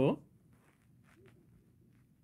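The end of a spoken word, then a faint quiet stretch with a few soft, short scratches of a stylus writing on a tablet screen about a second in.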